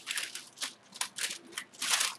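Sheet of baking parchment paper crinkling and rustling as it is picked up and handled, in a quick run of short crackles.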